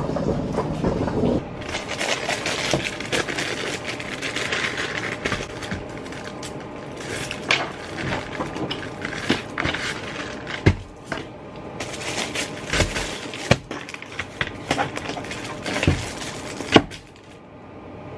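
Rustling and clattering of packaging and stock being handled, with scattered knocks and clicks throughout.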